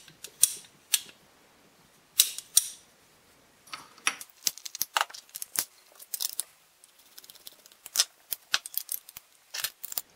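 Steel parts of a Rogers & Spencer percussion revolver being handled and fitted back together during reassembly: irregular sharp metallic clicks and light knocks, in short clusters with brief pauses between.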